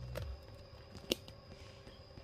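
Quiet handling noise of a camera and ring-light setup being adjusted, with one sharp click about a second in and a few fainter ticks.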